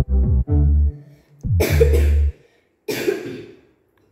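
Background keyboard music for the first two seconds, then a boy coughing twice, harshly, a little over a second apart, as from the burn of an extremely hot chili chip.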